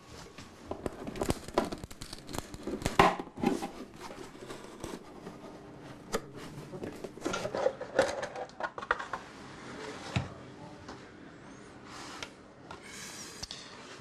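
Handling noise as a violin is picked up and looked over: irregular clicks, light wooden knocks and rustling, with several louder knocks scattered through.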